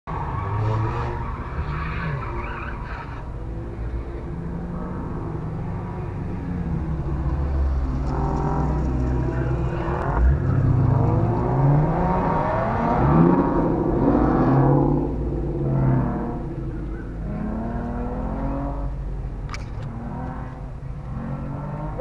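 Car engine heard from inside a waiting car's cabin: another car's engine revving hard as it accelerates away from an autocross start, pitch rising in several sweeps about halfway through, over the steady drone of the waiting car idling.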